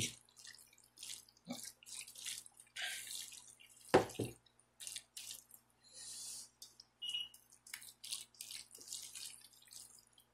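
A spatula stirring and folding chunky tuna salad in a stainless steel bowl: irregular wet squelches and scrapes against the metal, with one louder thump about four seconds in.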